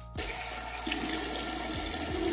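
Bathroom tap running steadily into a sink while cleanser is rinsed off a face. It starts abruptly just after the start.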